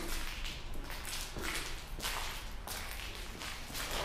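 Footsteps at a steady walking pace, each step a short scuff or swish, about one every two-thirds of a second.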